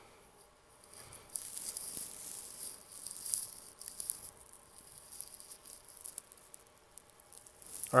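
Faint rustling hiss, mostly high in pitch, loudest between about one and a half and four and a half seconds in, then fading.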